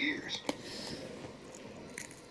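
Faint whispering, with a single sharp click about half a second in.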